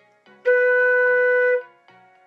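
Concert flute sounding a single held B natural, one steady clear note of about a second that starts about half a second in and stops cleanly, over faint background music.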